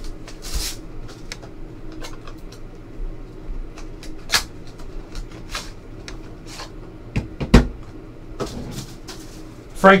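Trading cards and hard plastic card holders being handled on a table: light sliding and scattered sharp plastic clacks and knocks, the loudest about seven and a half seconds in.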